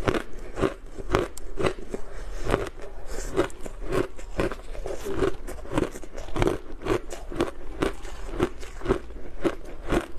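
Close-up chewing of a mouthful of refrozen shaved ice: steady, crisp crunches, about two a second.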